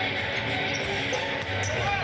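A basketball being dribbled on a hardwood court over steady arena crowd noise and background music.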